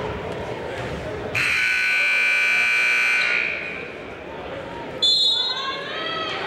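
Gym scoreboard buzzer sounding one steady tone for about two seconds, starting about a second in, over the chatter of the crowd. It marks the end of a timeout. Near the end comes a short, shrill referee's whistle.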